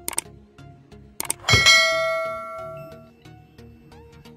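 YouTube subscribe-button animation sound effect: quick mouse clicks near the start and again just after a second in, then a bright bell ding that rings out for about a second and a half, over background music.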